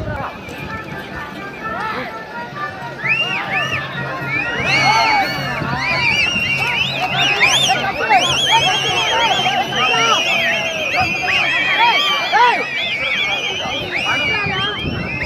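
Large crowd of spectators shouting and whistling at bulls running loose, swelling about three seconds in and staying loud. A steady low hum runs underneath until near the end.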